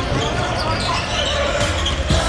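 Live sound of a high-school basketball game in a large gym: the ball bouncing on the hardwood court and players' voices calling out.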